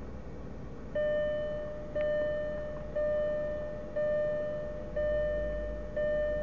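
A car's electronic warning chime, a single pitched tone struck about once a second, starting about a second in, each strike fading out before the next.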